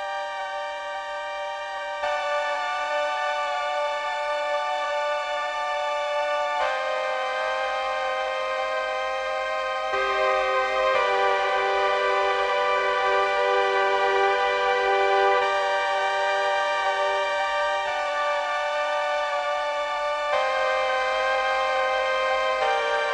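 Spitfire LABS Obsolete Machines software instrument played from a keyboard: held chords of steady electronic tones with reverb, moving to a new chord every two to five seconds.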